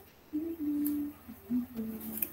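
A man humming softly with his mouth closed: one held note, then a few shorter notes.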